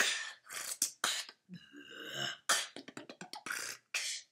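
A boy beatboxing: a quick run of sharp percussive mouth sounds, broken about halfway through by a short drawn-out pitched vocal sound before the beat picks up again.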